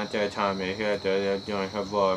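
A young man's voice in a repetitive, half-sung run of mumbled syllables with no clear words. Behind it is a thin, steady high-pitched whine.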